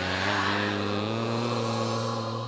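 A male voice chanting a Buddhist recitation, holding one long, steady note.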